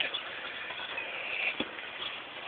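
Motorized bicycle ridden with its engine shut off: a steady rushing of wind and rolling noise with a light whir, and one sharp click a little past halfway.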